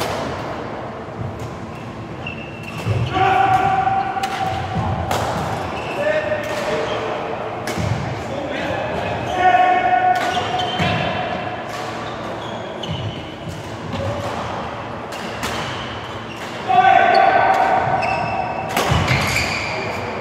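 Badminton in a large, echoing sports hall: sharp racket strikes on the shuttlecock and high squeaks of court shoes on the floor, with voices in the hall.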